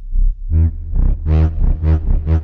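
UVI Falcon software synthesizer playing a wavetable bass patch from a Morph pressure pad: a deep held low note under pulsing pitched notes about two a second, their brightness swelling and fading with each pulse.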